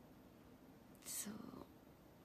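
Near silence broken about a second in by one short, breathy sound from a woman's mouth, lasting about half a second. It starts hissy and slides lower.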